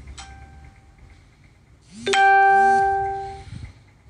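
Two chimes: a faint one just after the start, then a loud single ding about two seconds in that rings out and fades over about a second and a half.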